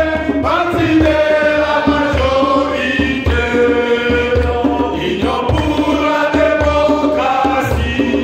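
A crowd singing an anthem together, with a steady low beat under it about twice a second.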